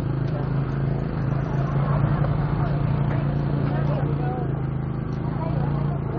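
Small motorbike engine running steadily at low speed, a constant low hum, with scattered voices of people around it.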